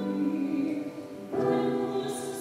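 Solo soprano singing a psalm setting with piano accompaniment. A held note fades, and a new sung phrase begins a little past the middle.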